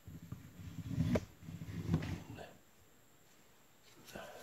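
Handling noise from a phone camera being moved and repositioned: low rubbing and rustling with a sharp click about a second in, dying away to quiet in the second half.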